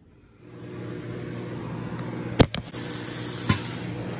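A steady low mechanical hum that starts about half a second in, with two sharp knocks about two and a half and three and a half seconds in.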